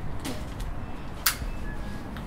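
Cigarette lighter flicked: a faint scrape just after the start and a sharp, very brief strike about a second in, over a steady low background rumble.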